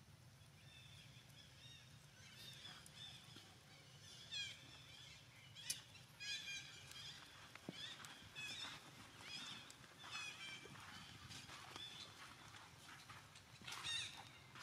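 Faint, repeated high-pitched chirping or squeaking calls from a small animal, many of them short and falling in pitch, with a sharper, louder call about halfway through.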